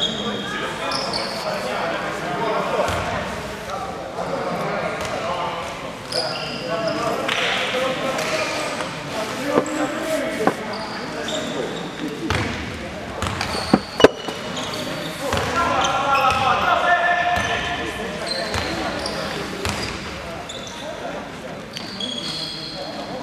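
Handball play in an echoing sports hall: players' voices calling out, the ball bouncing on the wooden court, and short high squeaks. A few sharp ball impacts come a little past the middle, the loudest of them about two-thirds of the way through.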